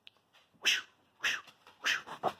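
A small dog making three short, breathy sounds, about half a second apart.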